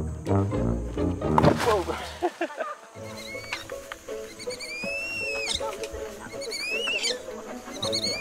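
Background music that breaks off about two seconds in. From about three seconds, softer music carries on under a run of high-pitched squeaky calls that rise and fall, from young orangutans.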